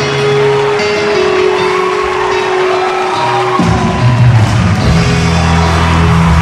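A live rock band playing through a PA in a large hall. Held notes carry the first half; a little past halfway a heavy low end comes in and the music gets louder.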